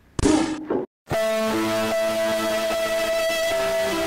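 A loud burst about half a second long, the pistol shot, followed by a moment of dead silence and then music with held guitar-like notes.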